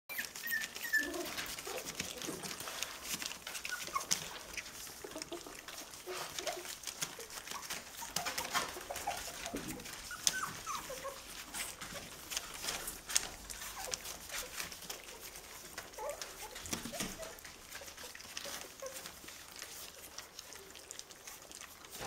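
Four-week-old schnauzer puppies eating their first solid food from steel bowls: many small clicks and smacks of mouths in the food, with short squeaks scattered throughout.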